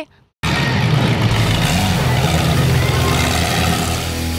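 A destruction derby car's engine running loud, its pitch rising and falling as it revs. It cuts in suddenly about half a second in.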